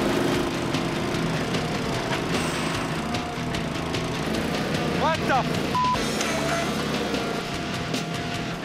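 Small engine of a Toro compact utility loader running steadily while its hydraulic auger bores into loose, rocky soil. A short censor bleep sounds about six seconds in, just after a brief voice.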